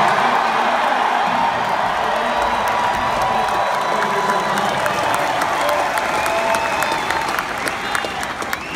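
Large arena crowd cheering and applauding, with many close handclaps over a steady roar of voices.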